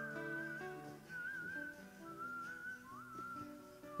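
Soft background music: a high, wavering lead melody in a few short phrases over held low chord notes.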